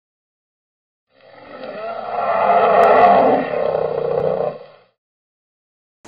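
An opening sound effect that swells up about a second in, holds for a couple of seconds and fades out before the five-second mark.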